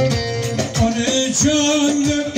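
Bolu folk dance tune (oyun havası) played live, with a man singing over a sustained melody line and a steady drum beat of low thumps about twice a second.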